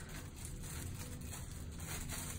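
Faint rustling of a thin clear plastic bag being handled and worked over a handheld device, over a low steady room hum.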